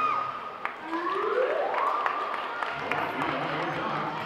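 Crowd noise in a gymnasium: spectators talking and clapping, with a few short sharp knocks and a tone that rises in pitch about a second in and then holds.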